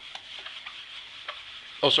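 A whiteboard eraser rubbing back and forth across a whiteboard, wiping off marker ink: a steady hiss.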